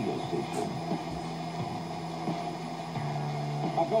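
A 1977 Panasonic RF-2200 portable radio's speaker playing a long-distance AM station in a gap between programmes, with no speech. A steady low hum with faint static runs under it, and the hum drops slightly in pitch about three seconds in.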